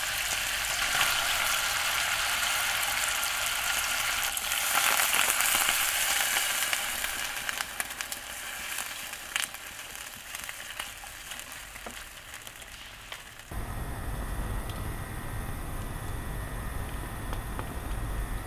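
Thin-sliced beef brisket sizzling in a hot pot, loud for the first several seconds and then dying down, with a few small clicks. About three-quarters of the way through, the sound switches abruptly to a steady low rumble.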